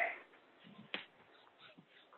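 A single sharp click about a second in, between short faint bits of voice, heard over a narrow-band call audio line.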